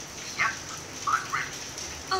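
Three short, high-pitched cries from an animal, each rising in pitch, in quick succession between about half a second and a second and a half in.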